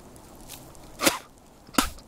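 Two short, sharp knocks, about three quarters of a second apart.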